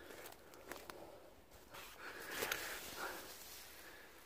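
Faint footsteps and rustling in dry leaf litter, a little louder about two seconds in, with a few soft clicks.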